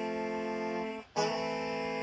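Soloed horn section of six overdubbed alto saxophone parts playing back, holding a chord that breaks off about a second in, with a second held chord starting just after.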